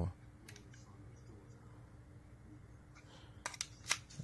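Small clicks of a pointed tool pressing into the base-plate hole of a steel Wilson Combat 1911 magazine to free the base plate: one faint click about half a second in, then a few sharper clicks near the end.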